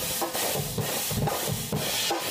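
Acoustic drum kit with clear acrylic shells played in a steady groove: cymbal or hi-hat strokes about four a second over bass drum and snare hits.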